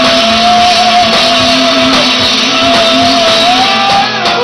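Live rock band playing loudly: electric guitar, keyboard and drums. One long held note runs through and bends upward near the end.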